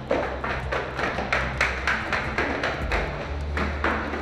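Quick, even footsteps hurrying down a staircase, about three steps a second, over a low steady music drone.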